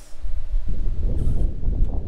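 Wind buffeting the microphone: a loud, uneven low rumble, with a faint hum that drops out early and a single light click near the end.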